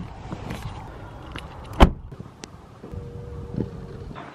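A person getting out of a car, with clothing rustle and shuffling on asphalt, then the car door shut with a single sharp thump a little under two seconds in. A faint steady tone sounds for about a second near the end.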